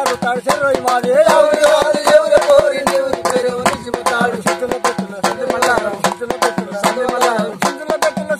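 Men singing a Telugu kolatam village folk song, the melody wavering and held in long phrases. Sharp hand claps keep a quick, steady beat of about four to five a second under the singing.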